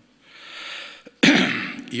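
A man's breath drawn in softly, then about a second in a sudden loud throat clearing picked up close by the microphone, just before he resumes speaking.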